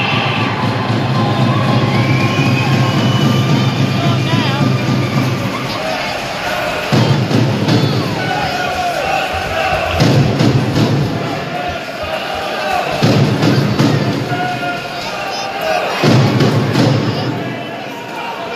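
Ice hockey arena sound: music over the rink's speakers, crowd chatter and cheering, and scattered thuds.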